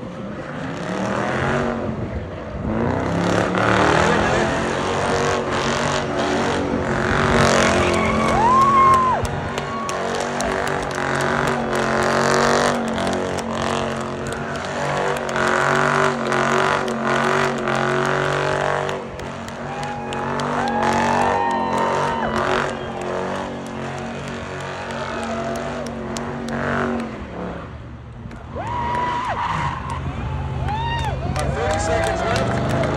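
Dodge Charger doing a long smoky burnout in circles: the engine is held at high revs while the rear tyres spin and squeal on the pavement. It builds up over the first couple of seconds, holds steady, and the revs drop a few seconds before the end.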